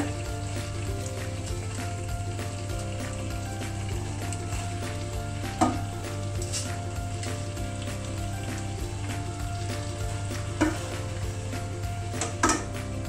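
Steady sizzle from the chicken gravy frying in the pan as a metal spoon spreads a layer of cooked rice over it, with a few sharp clicks of the spoon against the pan about halfway through and again near the end.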